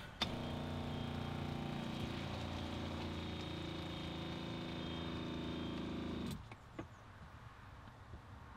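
Fiamma camper water pump (7 litres a minute) switched on to feed the gas water heater: a steady motor hum that runs for about six seconds and then stops abruptly.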